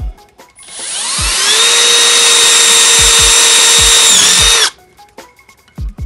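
Cordless drill running at high speed with a 1/8-inch bit, drilling a hole in the aluminium hub-motor cover: it spins up over about a second to a steady high whine, wavers briefly near the end and stops abruptly.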